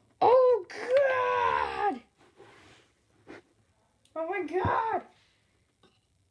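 A voice making two drawn-out, wordless vocal sounds with gliding pitch: a longer one at the start and a shorter one about four seconds in.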